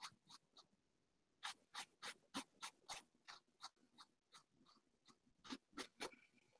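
Faint, short scratches of a paintbrush dabbing and stroking acrylic paint onto a fabric suitcase, a quick run of about three a second for a couple of seconds, with a few more strokes near the start and end, amid near silence.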